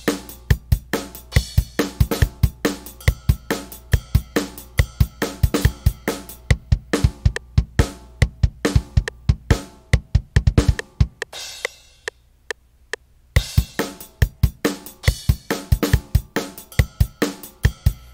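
A programmed drum beat from FL Studio's FPC drum sampler plays back as a loop. It is a steady rhythm of kick drum, snare, hi-hat and crash cymbal hits. The beat breaks off for about a second and a half past the middle, then comes back.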